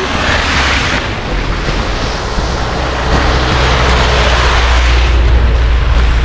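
Heavy vehicle (truck or bus) coming along a slushy road: a steady engine rumble with tyre hiss that grows louder over the last few seconds.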